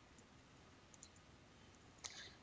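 Near silence: room tone with a couple of faint computer mouse clicks, the clearer one about a second in.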